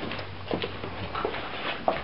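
A puppy moving about on a tiled floor, its claws making a few scattered clicks on the tiles.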